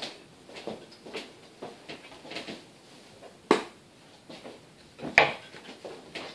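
Rubber bands being handled and shot: light taps and rubbing, with a sharp snap about three and a half seconds in and another about five seconds in.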